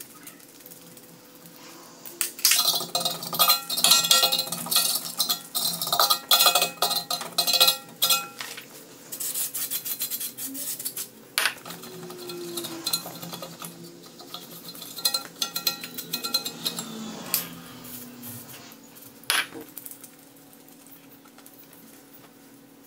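Metal hand tools and parts clinking and scraping against a car's rear wheel hub: a dense run of rapid clinks for several seconds, then scattered knocks and clinks.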